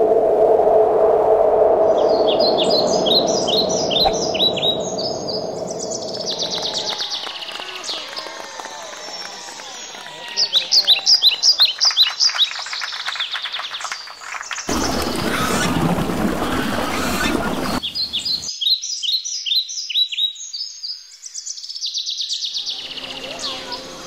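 Birds chirping in three runs of quick, high notes, the loudest near the middle, with a rush of noise lasting about three seconds between the second and third runs.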